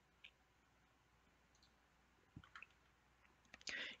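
Near silence broken by a few faint computer clicks: one near the start and a couple more past halfway.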